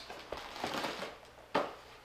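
Cardboard shipping box being rummaged through by hand: rustling and crinkling of the box and packing, with a sharp knock about one and a half seconds in.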